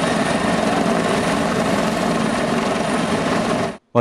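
Steady, loud rushing noise of breaking surf with wind on the microphone, which cuts off suddenly near the end.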